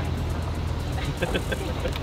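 SUV engine idling steadily, a low even hum with no revving.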